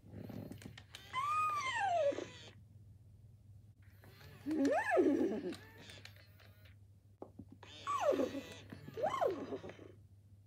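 Hasbro FurReal Friends Cinnamon toy pony playing a recorded horsey noise three times through its speaker. Each call is whinny-like, rising and then falling in pitch. This is the toy's response to short presses on its back sensor; the song plays only when the sensor is pressed and held.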